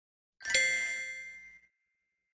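A single bright bell-like ding, a chime sound effect, about half a second in, ringing out over about a second.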